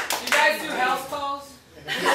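Audience clapping that dies away within the first half second, followed by a voice drawn out on a held note, a short lull, and voices again near the end.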